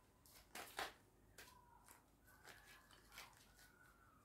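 Faint, scattered soft clicks and rustles of a tarot deck being shuffled by hand, the loudest a little under a second in, over quiet room tone.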